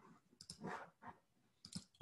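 A few faint, scattered clicks from a computer's mouse or keys as the screen share is being set up.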